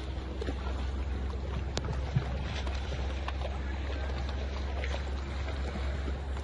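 A boat's motor running at a steady low rumble while the boat moves across harbour water, with wind noise on the microphone.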